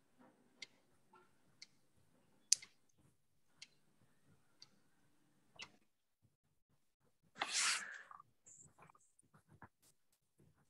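Faint ticking, one sharp click about every second, in a quiet room, then a brief louder rushing hiss about seven and a half seconds in.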